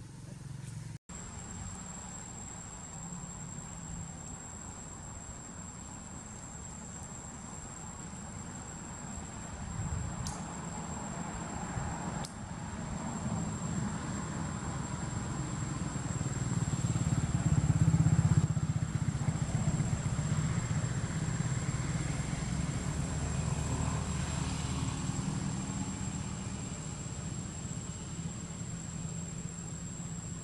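Motorcycle engine running, growing louder to a peak about eighteen seconds in, then slowly fading as it passes, with a steady thin high-pitched tone throughout.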